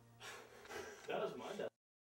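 Short breathy vocal sounds for about a second and a half, coming in a few uneven bursts, after the last trace of a song's fade-out. They cut off abruptly into complete silence at the gap between two tracks.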